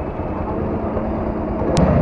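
Motorcycle engine idling steadily under the rider, a low, even rumble, with a short click near the end.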